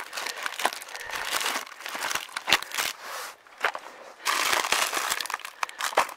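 Plastic instant-noodle packets and foil food pouches crinkling as a gloved hand rummages through them in a bucket, in irregular bursts with sharp clicks, louder for a second or so about four seconds in.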